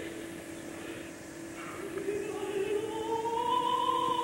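Live opera performance in a 1960 recording with poor, hissy sound: a steady held orchestral note underneath, then about two seconds in a singer enters on a long, rising note with wide vibrato that grows louder.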